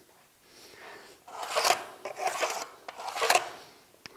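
Three short scraping rubs starting about a second and a half in, from a length of crown molding being slid and lined up against a miter saw's fence and table.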